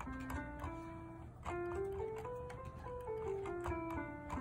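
A C major scale played one note at a time on a Novation MIDI keyboard with a sustained keyboard tone. It climbs from middle C up one octave in the first three seconds, then steps back down, with faint clicks from the plastic keys.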